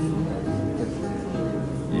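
Strummed acoustic guitar music, chords ringing on, with a voice over it.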